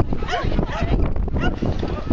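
Dogs barking and yelping excitedly, many short high calls overlapping without a break, mixed with people's voices.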